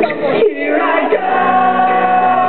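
Many voices singing together over acoustic guitar in a live acoustic rock song, the audience singing along. The strummed chords drop back about half a second in, leaving the sung melody to the fore.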